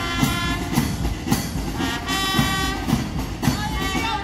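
March music with a steady drumbeat of about two beats a second under long held wind-instrument chords, setting the pace for marching.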